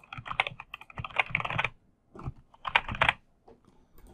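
Typing on a computer keyboard: quick runs of key clicks in three bursts, the first and longest lasting about a second and a half, then two short ones.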